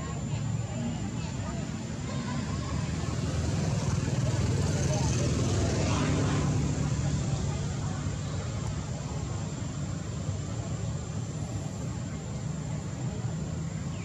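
A motor vehicle passing: its engine and road noise swell to a peak about six seconds in and then fade back into a steady low rumble.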